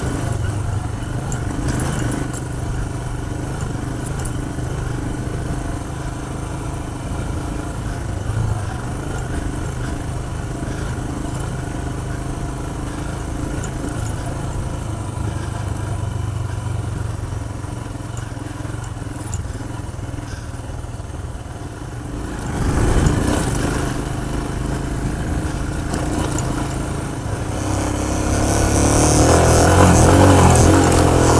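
Royal Enfield Himalayan's single-cylinder engine running steadily as it rides a sandy dirt track, with rattle and wind noise over it. About two-thirds of the way through there is a brief louder surge, and near the end the engine revs up and grows louder as the bike pushes into deeper sand.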